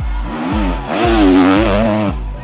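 Enduro motorcycle engine revving hard as the bike passes close, its pitch wobbling rapidly up and down under the throttle, getting louder about a second in.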